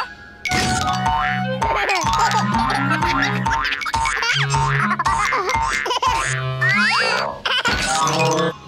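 Playful cartoon music with springy 'boing' sound effects and sliding pitch glides that rise and fall throughout.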